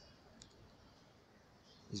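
Near silence: faint room tone, with a single faint short click about half a second in.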